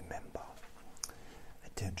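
A man speaking softly in a near-whisper, with a pause before the next word near the end.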